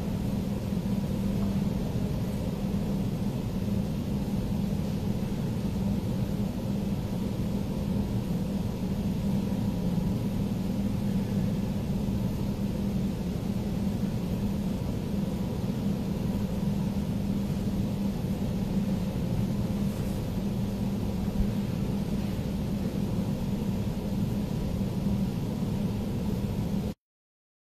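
A steady low hum with a faint hiss, unchanging throughout, with a thin steady tone above the main drone.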